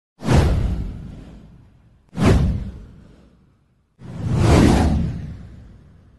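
Three whoosh sound effects for an animated title card, about two seconds apart. The first two hit suddenly and fade away; the third swells up more slowly before fading.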